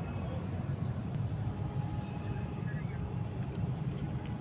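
Steady low rumble of a running vehicle, even throughout, with faint higher sounds over it.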